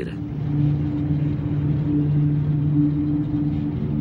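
Steady low rumbling drone with a held, deep two-note hum: a science-fiction spacecraft sound effect.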